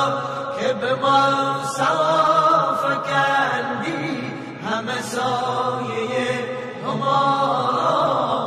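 A male radood (Shia devotional reciter) chanting a devotional song, a slow sung melody in long held phrases with short breaks between them.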